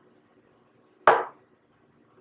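A single sharp knock about a second in, dying away within a quarter second.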